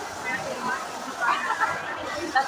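Speech: people talking and chatting over a busy café's background chatter.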